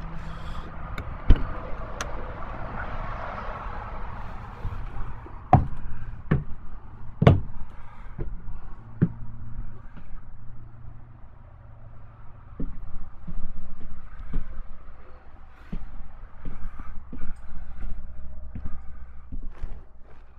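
A road vehicle passing during the first few seconds over a steady low hum. Then come two sharp knocks and a run of lighter taps and clicks as the motorhome's entry door and steps are used and someone moves through the coach.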